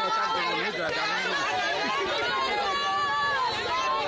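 A crowd of distressed people crying out and shouting at once, many voices overlapping, in grief and consternation.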